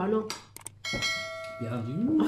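A subscribe-button animation sound effect: a short mouse click, then a bright notification-bell chime about a second in that rings and fades out within a second.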